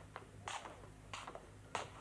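Faint footsteps, about four soft steps, over a low steady hum.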